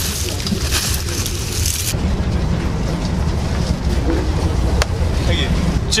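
Cornflakes poured from a plastic packet into a paper bowl, a dry rustling hiss for about the first two seconds. Under it, and alone after it, the steady low rumble of the high-speed train running, a carriage that keeps shaking, with a single click near the end.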